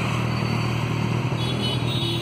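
Kawasaki Z800's inline-four idling steadily through an aftermarket SC Project exhaust, a low, even engine note.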